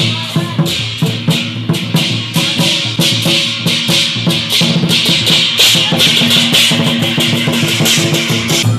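Vietnamese lion-dance percussion: a large barrel drum and clashing brass hand cymbals playing a fast, steady, loud beat, the cymbals striking about three times a second.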